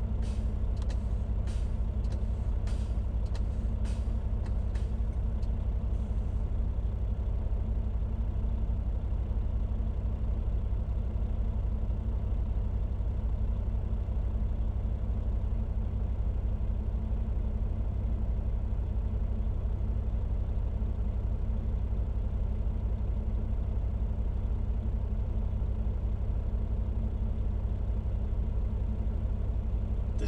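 Heavy truck's diesel engine idling steadily, heard inside the cab. For the first six seconds short sharp bursts of air come about twice a second as the brakes are pumped to bleed down air pressure for the compressor cut-in test.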